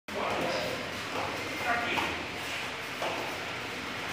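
Voices calling out in a large gym hall, with bare feet shuffling and slapping on foam mats as two sanda fighters move around each other.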